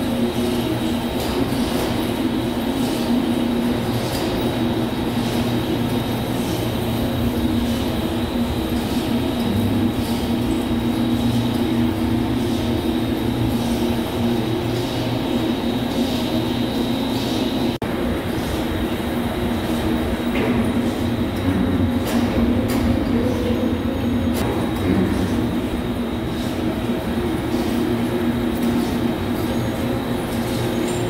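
Steady din of machinery running in a machine shop: a continuous low hum and drone with a thin, constant high whine above it.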